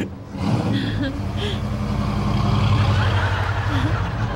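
A car engine running steadily, growing a little louder about two seconds in, as the Batmobile replica drives off.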